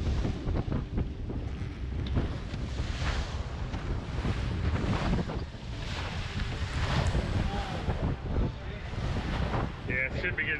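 Wind buffeting the microphone over the rumble of a 40-foot Nortech boat running fast through big waves, with surges of spray and water slapping the hull several times.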